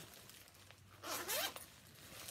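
Zipper on a tote purse being drawn, a short rasp about a second in.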